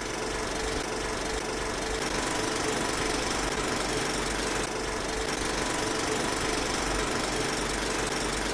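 Film projector running sound effect: a steady mechanical clatter with hiss and a low rumble.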